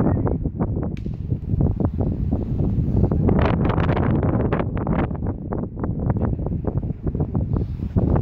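Wind buffeting the microphone in an irregular rumble, with scattered crackles and the voices of people nearby.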